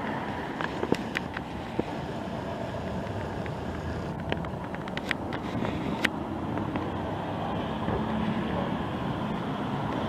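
Steady outdoor background noise, a low rumble with a murmur over it, broken by a few scattered sharp clicks.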